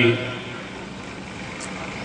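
The last moment of a man's spoken phrase over a microphone, then a pause filled with steady background noise and a faint constant hum.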